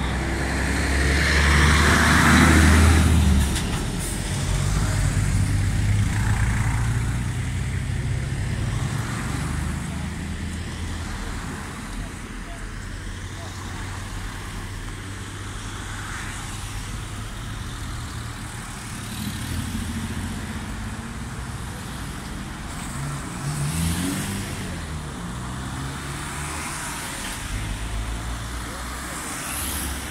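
Road traffic: car engines and tyres on asphalt as cars drive past one after another close by, loudest in the first three seconds, with faint voices in the background.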